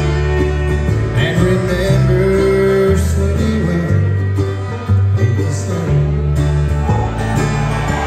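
A bluegrass band playing live on upright bass, banjo, mandolin, acoustic guitar and fiddle, with the bass moving to a new note about once a second.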